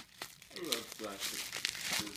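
Plastic bubble-wrap packing crinkling as it is handled and shifted around a doll.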